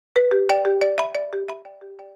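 A short, bright, ringtone-like chime melody of about eleven quick notes, each struck sharply and left ringing, fading out at the end.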